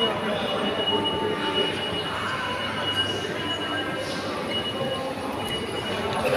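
Indoor shopping-centre hubbub with faint voices, and a steady high-pitched whine that runs throughout.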